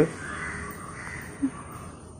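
Faint outdoor background hiss in a pause between speech, with one short soft sound about one and a half seconds in.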